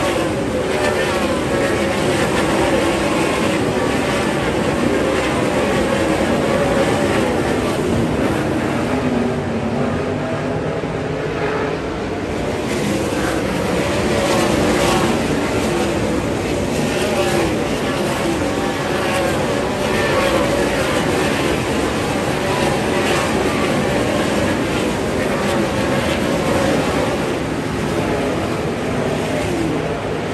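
A full field of 410 winged sprint cars racing on a half-mile dirt oval, their methanol-burning V8 engines blending into one continuous loud din. Engine notes rise and fall as the cars power down the straights and lift for the corners.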